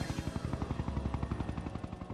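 Helicopter rotor chopping steadily in a rapid, even pulse of about a dozen beats a second.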